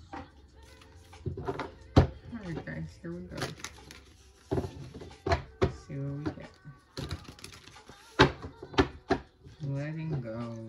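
A voice talking indistinctly, broken by several sharp taps or knocks; the loudest tap comes about two seconds in.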